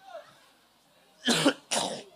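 A man coughing twice into a tissue held to his face: two short, loud coughs about half a second apart, near the end.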